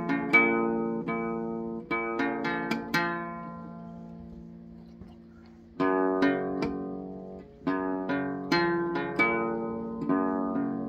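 Acoustic guitar picked note by note. About three seconds in, the last notes are left to ring and fade for nearly three seconds, and the picking starts again.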